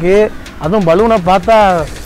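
A voice singing a melody, held notes with a short dip about half a second in.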